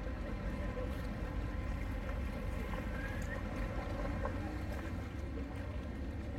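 Steady harbour-side outdoor ambience, mostly a low rumble, with a faint short rising whistle about three seconds in.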